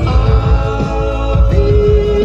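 Rock music with singing, with a steady low beat and held notes.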